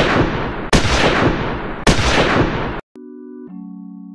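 Gunshot sound effects: two shots about a second apart, following one just before, each with a long echoing decay. After the last shot the sound drops out for a moment and a music bed of steady held tones continues.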